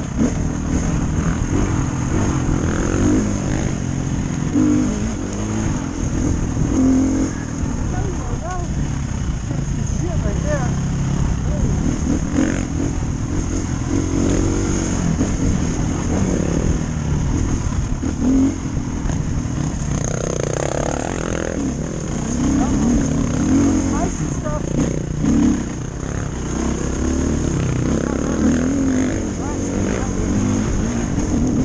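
Dirt bike engine heard from the rider's helmet, revving up and down continuously as the bike is ridden hard along a single-track trail.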